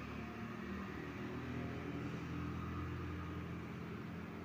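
Eggplant bajji deep-frying in a kadai of hot oil over a gas burner: a faint steady sizzle over a low, even hum.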